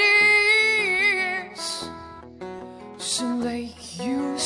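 A woman's voice singing live, holding a long note with vibrato on the word "is" over guitar. A shorter, lower sung phrase follows near the end.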